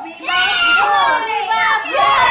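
Small children's high-pitched, wavering voices squealing and shrieking, with a brief dip just after the start.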